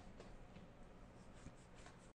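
Near silence: a pen stylus faintly scratching and tapping on a graphics tablet, with a few soft clicks.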